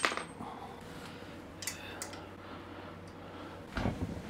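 Quiet room with a faint, low steady hum; a single small metal clink about two seconds in, from metal parts being handled, and a dull thump near the end.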